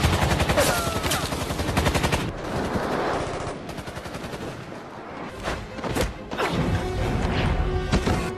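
A fast burst of automatic gunfire for about two seconds, then a few single shots or hits, over a film's music score.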